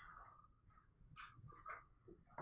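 Near silence: room tone with a few faint, brief taps.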